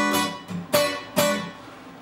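Acoustic guitar: a chord strummed several times, each strum left to ring, dying away near the end.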